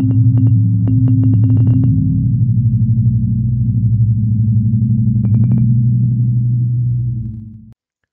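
Synthesized intro sting: a low, steady electronic drone with clusters of short, high sparkling ticks, fading out near the end.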